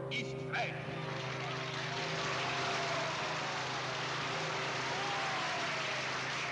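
A large crowd cheering, a dense steady roar of many voices that swells slightly after the first second and holds. A steady low hum runs beneath it throughout, from the old archival soundtrack. A man's voice is heard briefly at the very start.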